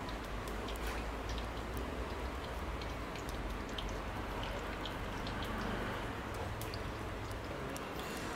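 Marinated chicken pieces deep-frying in hot oil in a wok: a steady sizzle with many small crackles and pops, over a low hum.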